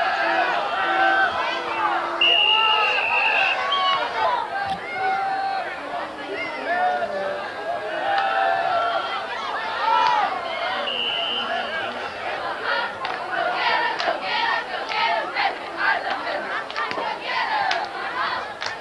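Football crowd yelling and cheering during a play: many voices overlapping, with long held shouts. In the second half, quick sharp sounds that look like clapping join the shouting.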